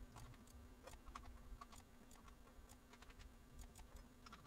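Faint, irregular computer mouse and keyboard clicks over a low steady hum.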